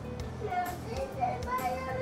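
Background music with a young child's high voice talking over it.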